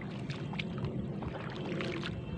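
Wading through shallow, muddy water: low sloshing with a few small splashes as the feet move.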